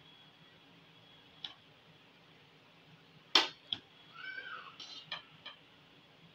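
A metal spoon clanks and scrapes against an aluminium pot while stirring cooked rice: a few sharp knocks, the loudest just over three seconds in, then a cluster of lighter clicks. A short squeak that rises and falls comes about four seconds in.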